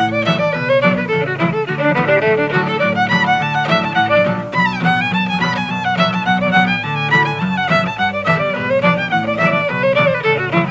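Fiddle playing a fast contest tune in quick runs of notes, backed by two acoustic guitars strumming chords.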